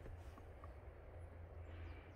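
Quiet outdoor background with a steady low rumble and two faint short chirps about half a second in.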